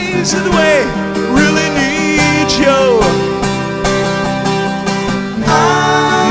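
EKO 12-string acoustic guitar strummed in steady chords, with a singing voice sliding between held notes over the first half and coming back near the end.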